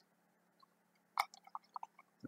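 A faint, short run of light clicks and taps about a second in, from handling the opened plastic case of an analogue voltmeter.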